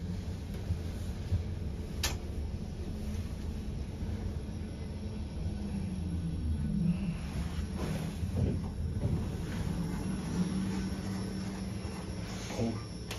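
KONE elevator car travelling in its shaft: a steady low rumble and hum of the ride, with one sharp click about two seconds in.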